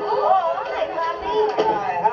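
A high-pitched voice speaking with unclear words, from a sitcom soundtrack playing on a television.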